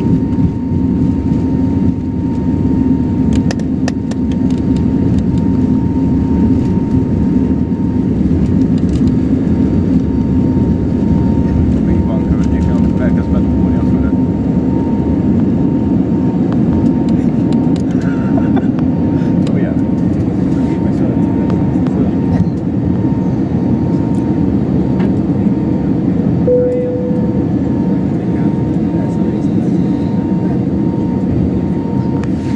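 Airbus A321neo jet engines at takeoff thrust heard inside the cabin: a loud, steady low rumble with a thin steady whine above it, through the takeoff roll and climb-out.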